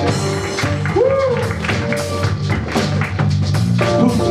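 Live funk band playing, with a driving bass line and drum kit and a note that swoops up and back down about a second in.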